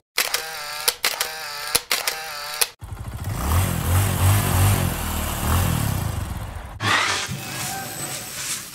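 Animated intro sound effects: a short wavering musical sting with regular clicks, cut off suddenly about three seconds in. A dense, rumbling engine-like noise with pulsing low tones follows for about four seconds, then a sudden bright burst of sound near the end.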